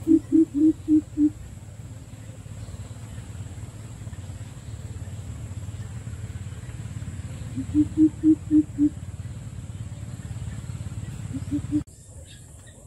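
Greater coucal giving its deep, hollow hooting call in runs of about four to five hoots a second. There is a bout of about six hoots at the start, another of about six some eight seconds in, and a short run of two or three just before the end, over a steady low background hum.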